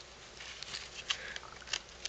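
Faint rustling and a few light ticks of hands handling a handmade paper mini album and its embellishments.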